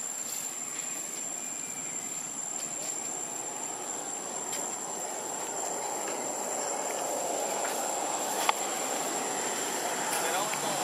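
Steady rushing background noise, a little louder in the second half, with a constant high thin whine over it and a single sharp click near the end.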